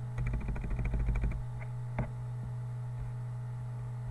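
Computer mouse: a quick run of small scroll-wheel ticks lasting about a second, then a single button click about two seconds in. A steady low electrical hum runs underneath.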